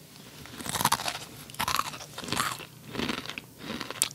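Chewing a mouthful of dry, crispy Baby Star garlic-flavour ramen noodles, crunching about five times at a steady pace, a little faster than one crunch a second, starting about half a second in.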